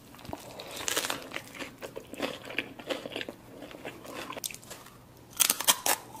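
Close-miked chewing of a mouthful of burrito, with soft, irregular crackly crunches. Near the end come several loud, sharp crunches as a crisp rolled blue tortilla chip is bitten.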